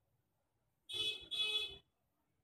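Two short, steady-pitched beeps in quick succession, each about half a second long, starting about a second in.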